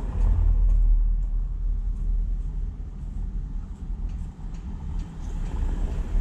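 Low vehicle rumble heard from inside a car's cabin, loudest in the first second or so and then easing.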